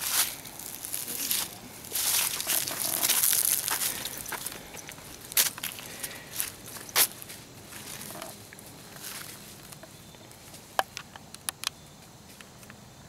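Footsteps crunching through dry fallen leaves and undergrowth, thinning out to a few sharp clicks near the end.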